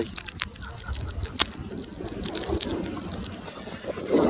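Wind buffeting the microphone with a steady low rumble, along with scattered sharp ticks and taps.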